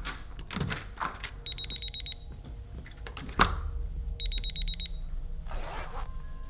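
A home security alarm keypad sounds two quick trains of about seven high beeps, a couple of seconds apart. Door-lock clicks and a sharp knock come between them, and there is a rustle near the end.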